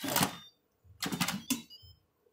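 Instant Pot stainless-steel lid being twisted to unlock and lifted off the pot, with metal scraping and clicking in two short bursts: one at the start and another about a second in.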